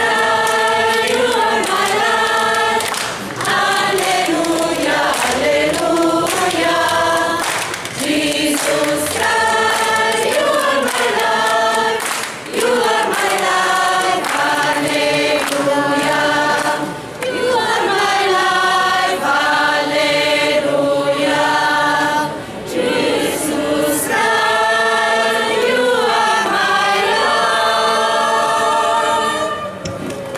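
Choir of mostly women's voices singing unaccompanied, in phrases broken by short pauses for breath. The song ends near the end.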